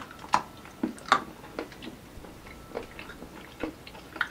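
Two people biting into and chewing squares of crisp dark chocolate studded with freeze-dried raspberries: a handful of sharp snaps and crunches, the clearest at the start and just after one second, then softer chewing clicks.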